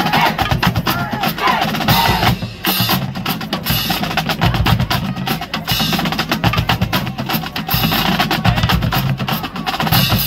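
Marching band drumline playing a fast cadence: snare drums rattling out rolls over steady bass-drum beats.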